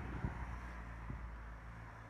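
Low, steady background hum with light wind noise on the microphone, and a faint click about a quarter of a second in.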